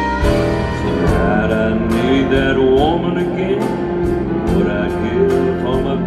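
Live country band playing a slow song with a steady drum beat and guitar, and a man singing lead over it.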